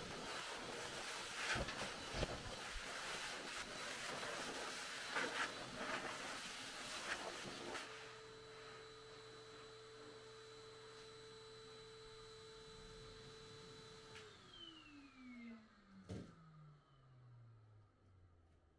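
Pet blow dryer running: rushing air with rustling and knocks as it is worked over a dog's coat, then a steady motor hum that glides down in pitch in the last few seconds as the switched-off motor spins down. A single sharp knock near the end.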